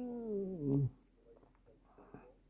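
A single drawn-out vocal sound that slides down in pitch and stops about a second in.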